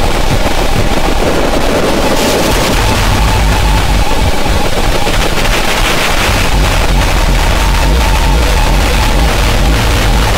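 Power-noise industrial music: a loud, dense wall of distorted noise over a heavy low rumble, growing harsher and brighter about two seconds in.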